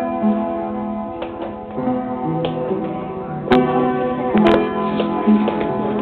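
Piano being played: held notes and chords changing every second or so, with a couple of sharp knocks midway.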